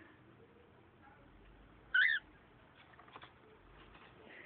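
Cockatiel giving a single short chirp about halfway through, then a few faint clicks.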